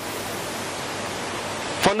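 A steady, even hiss like static, with no tone or rhythm, filling a pause in the speech; a man's voice starts again near the end.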